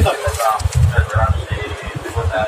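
Indistinct voices under the heavy rumble and knocks of a phone's microphone being jostled and rubbed as it is carried.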